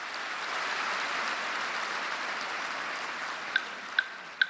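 Audience applause in a large hall at the end of a piece, swelling and then fading. Near the end, two single marimba notes ring out as the next piece begins.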